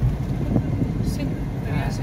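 Steady low rumble of a car's engine and tyres on the road, heard from inside the cabin while driving at highway speed.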